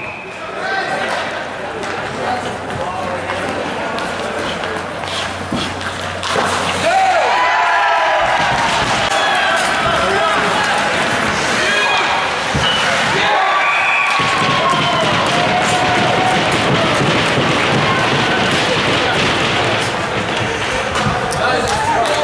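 Live ice hockey rink sound: sticks and pucks knocking and clacking on the ice and boards, with spectators shouting and cheering that grows louder about seven seconds in and stays loud.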